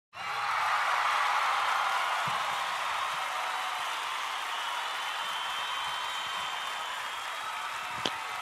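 Audience applause, starting abruptly, loudest in the first second or two and easing off slowly.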